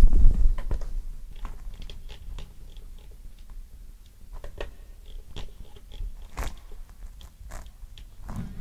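Irregular small clicks and handling noise picked up by a handheld vocal microphone while the level controls of a vocal harmony pedal are adjusted, with a louder low bump of mic handling at the start.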